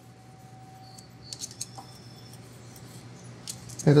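Faint metallic clicks and light scraping as a thin steel feeler gauge blade is slid between the rocker arm and valve stem of a Briggs & Stratton 17.5 hp overhead-valve engine to check the valve lash. A few small clicks come about a second and a half in, and another near the end.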